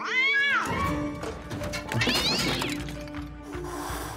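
A cat yowling twice, each a drawn-out call that rises and then falls in pitch: one at the start and one about two seconds in, over background music.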